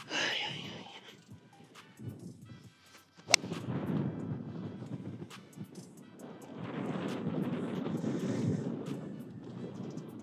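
A golf club striking a ball from a sandy lie: one sharp, crisp click about three seconds in. Background music and a steady rushing noise follow the strike.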